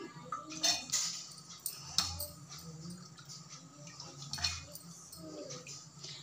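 Soaked chana dal being scooped by hand out of a bowl of water and dropped into a steel mixer-grinder jar: faint wet handling and dripping, with a few light clicks against the steel.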